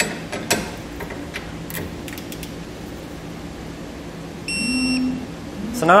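A few light clicks as a torque wrench tightens a bolt on the ladder-rack upright, then one short electronic beep of under a second about four and a half seconds in, the signal a digital torque wrench gives on reaching its set torque.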